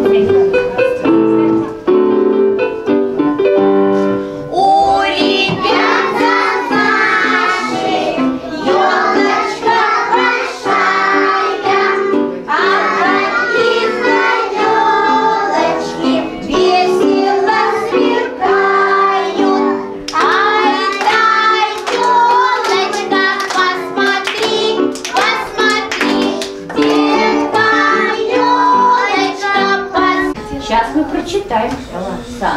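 A group of young children singing a song together over an instrumental accompaniment; the accompaniment plays alone for the first few seconds and the children's voices come in about four seconds in.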